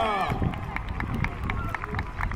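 Audience applause: scattered, irregular hand claps from an outdoor crowd, over a low rumble.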